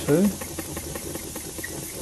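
Miniature spark-plug oscillating engine with twin flywheels running on compressed air, a rapid, even ticking from its piston and valve. The air has been turned down and it is running at about its slowest speed.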